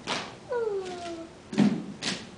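A few sharp, hollow strikes from hand claps and calabash gourd rattles slapped against the palm, unevenly spaced, the loudest at about a second and a half in. Between the strikes, a single voice slides down in pitch.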